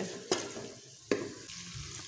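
Wooden ladle stirring and mashing tomato-onion masala frying in oil in a pressure cooker, with a light sizzle and two sharp knocks of the ladle against the pot, about a third of a second and a second in.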